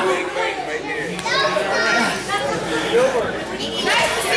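Wrestling crowd at ringside, many voices talking and calling out over one another.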